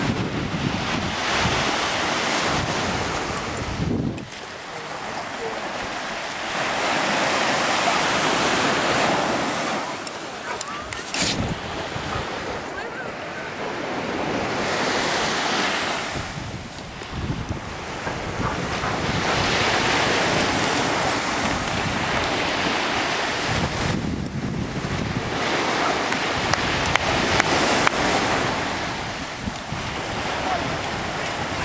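Surf breaking and washing up a sandy beach, a rushing noise that swells and ebbs in long surges, with wind buffeting the microphone.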